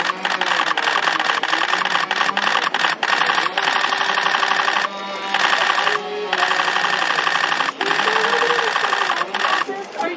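A loud, steady mechanical buzz, dropping out briefly twice around the middle, with voices underneath.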